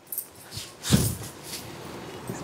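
Silk sarees being handled and spread out: a few short rustles of the cloth, the loudest about a second in.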